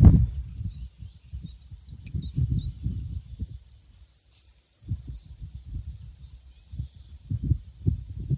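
Wind buffeting the microphone in uneven low gusts that drop out for a moment about halfway through, with small birds chirping faintly in the background.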